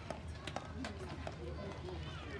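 Faint outdoor rink sound: distant voices and a few light taps over a low steady rumble.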